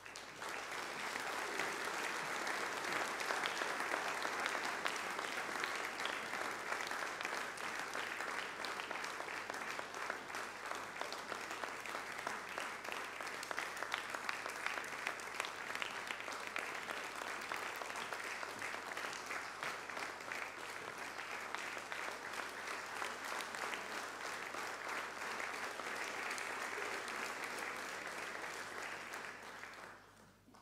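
Audience applauding, starting suddenly and fading out near the end.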